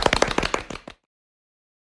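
Applause, a fast, irregular patter of hand claps, fading and then cut off abruptly just under a second in.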